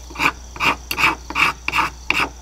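Knife blade scraping along a stick of resin-rich fatwood in quick, even strokes, about two or three a second, shaving off fine tinder.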